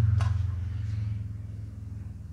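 A steady low hum that slowly grows fainter.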